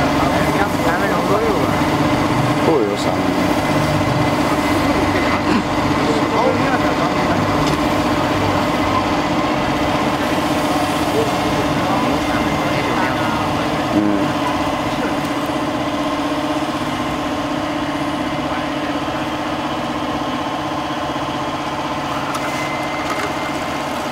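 Energy Storm-type amusement ride running empty: a steady mechanical hum and whine from its drive machinery as the claw arms spin, easing slightly in the second half. People's voices talk over it at times.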